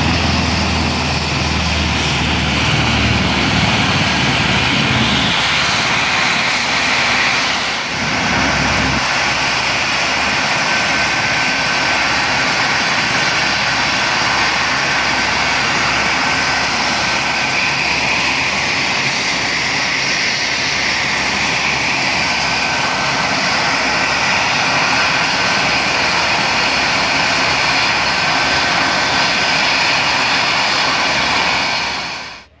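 Leonardo AW189 helicopter's twin turboshaft engines and rotor running on the ground: a steady, loud rush of turbine and rotor noise with a thin whine over it. A deeper rumble sits under it for the first few seconds, and the level dips briefly about eight seconds in.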